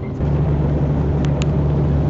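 Steady engine and road drone inside a moving vehicle's cab, a low hum that jumps louder about a quarter second in and then holds even. Two faint short ticks come near the middle.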